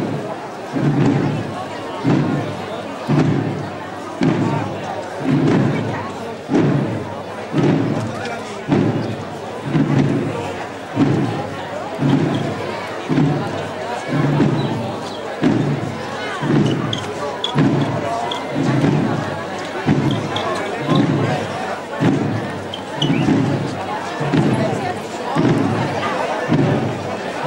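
A drum beating slowly and steadily, about one beat a second, over a murmuring crowd.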